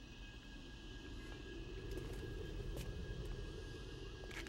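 A low city rumble, like distant traffic or aircraft, that swells to a peak about two seconds in and then eases off.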